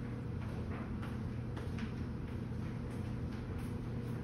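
A steady low hum with a few faint ticks scattered through it.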